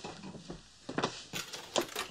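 A string of sharp clicks and knocks, brighter and more metallic in the second half: the receiver and coin slot of a wall-mounted payphone being handled as a call is started.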